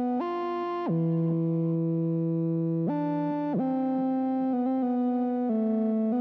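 Instrumental music: sustained synthesizer keyboard chords with no drums, moving to a new chord every second or two.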